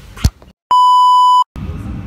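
A single loud, steady electronic beep, about three quarters of a second long, starting and stopping abruptly with dead silence on either side; a short sharp click comes just before it. Near the end a noisy background din cuts in.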